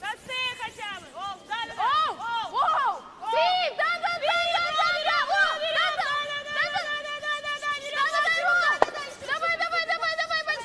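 Women curlers shouting drawn-out, high-pitched sweeping calls as a stone travels, some calls held for a second or more, with the scrubbing of brooms on the ice beneath them.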